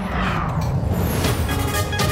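News ident transition sting: a whoosh that sweeps downward over the first second, then a synthesized musical chord comes in about one and a half seconds in.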